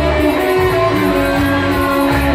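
Live cachaca band playing an instrumental passage without vocals: electric guitar and bass over a steady pulse of about two beats a second, with held melody notes above.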